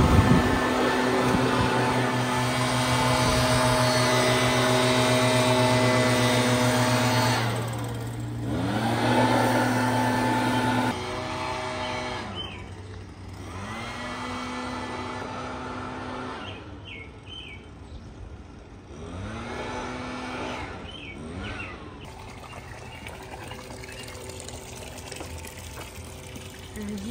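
Leaf blower running at high speed, its pitch dropping and climbing back up several times as the throttle is eased off and opened again. From about eleven seconds in it is farther off and quieter.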